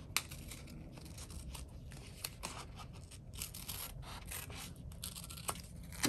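Small scissors snipping through a sheet of sticker paper in a run of soft, short, irregular cuts, with the paper rustling as it is turned.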